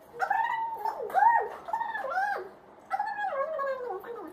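A dog whining in a string of high cries that rise and fall, in two bouts with a short break about two and a half seconds in.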